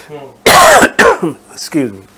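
A man gives a single loud cough to clear his throat about half a second in, followed by a couple of short voiced sounds that fall in pitch.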